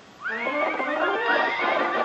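A cartoon horse's whinnying laugh from an old Disney cartoon soundtrack: after a brief hush it breaks into a long, wavering run of neighing laughter. It is heard played back through a computer's speakers.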